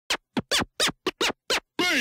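Turntable scratching of a pitched sample: seven quick, separate scratches, each a short falling sweep, then a longer downward sweep near the end.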